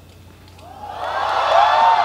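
Audience cheering and screaming at the end of a song, swelling from about half a second in and loudest near the end.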